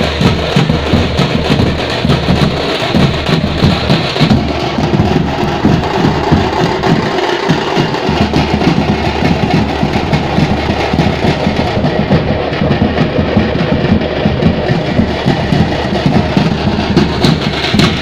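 A troupe of drummers beating large drums together in a fast, dense, continuous rhythm.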